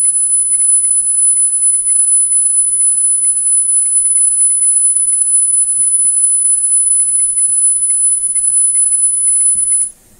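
A steady, high-pitched 10 kHz test tone from a magnetic reference laboratory calibration tape, played back on a Sony TC-765 reel-to-reel to check its playback head alignment. The tone is a single pure pitch and cuts off just before the end.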